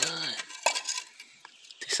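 A few light clinks and taps from a hollow fired-clay brick being handled, three short sharp ticks spread across the moment.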